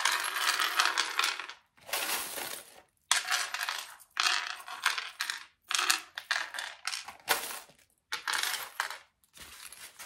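Small metal charms pouring out of a zippered pouch and clattering onto a wooden tray, in about eight short bursts of jingling with brief pauses between.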